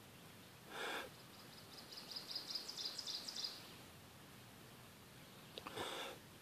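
Breath blown into a smouldering jute-rope tinder bundle to coax the ember to flame, in two short puffs: one about a second in and one near the end. Between them a bird gives a rapid high trill lasting about two seconds.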